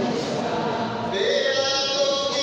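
A group of people singing together in a church, several voices at once; a higher, brighter part comes in about a second in.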